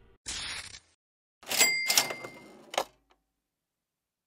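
Cash register sound effect: a short mechanical rattle, then a bell ding with a clatter, closing with a click.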